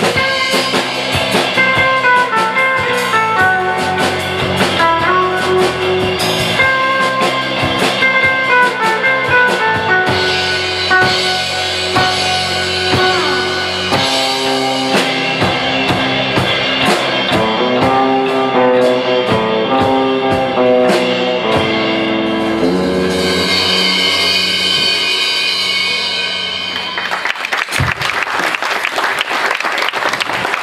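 Live instrumental surf rock from a band with electric guitar, electric bass and drum kit, the guitar picking out a stepping melody over the beat. The tune closes on a held chord a few seconds before the end, and applause follows.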